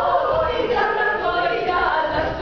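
Music sung by a choir: several voices holding notes together in one phrase, which begins just after a brief pause.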